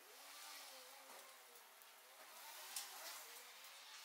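Burning matchsticks: the faint, soft rush of flames with scattered small crackles, the sharpest one about three quarters of the way through.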